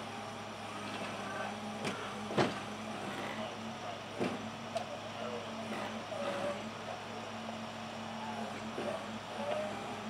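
Steady low hum of an idling vehicle engine, with a few sharp clicks about two and four seconds in.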